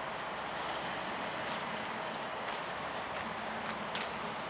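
Steady outdoor background hiss with a few faint, light ticks scattered through it.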